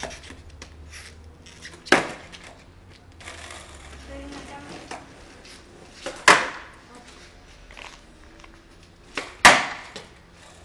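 Skateboard deck and wheels slapping down hard on asphalt three times, a few seconds apart, the sound of trick attempts such as ollies; between the impacts the wheels roll with a low grinding hiss.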